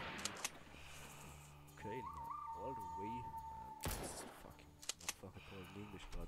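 Online slot machine game sound effects during free spins: a steady held tone, then a single loud sharp bang a little past the middle as a second expanding skull wild reel lands on the grid.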